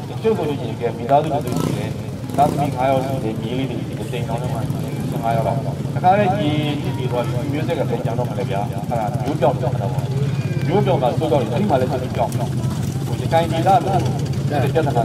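A man speaking continuously through a public-address system: his voice goes from a handheld microphone out through horn loudspeakers. A steady low hum runs underneath.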